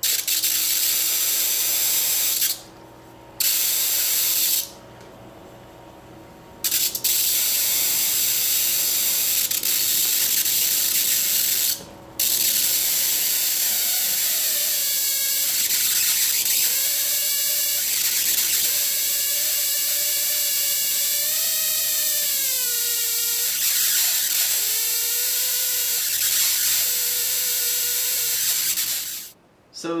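High-voltage spark gap firing continuously, a loud harsh crackling buzz of rapid repeated discharges as air flow and a magnetic field blow the arc out and it re-strikes. It stops briefly twice in the first seven seconds and once near 12 s; from about 14 s its pitch wavers up and down, and it cuts off just before the end.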